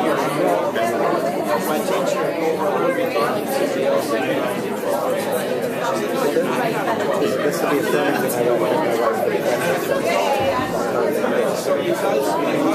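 Many people talking at once in a large room: steady, overlapping chatter with no single voice standing out.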